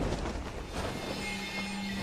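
Test parachute fired out and inflating in a full-scale wind tunnel's airstream: a sudden burst at the start, then a loud, steady rush of air, with music mixed underneath.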